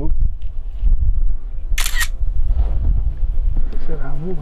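Wind buffeting the microphone as a steady low rumble, with one short, sharp splash about two seconds in as a small trout is let go into the lake.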